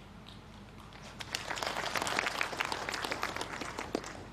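Audience applauding: many hands clapping, building about a second in and dying away near the end.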